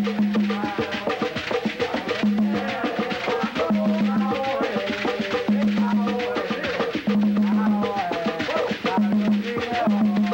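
Afro-Cuban hand-drum ensemble playing a fast, dense rhythm of strikes, with a low held tone recurring every second or two beneath it.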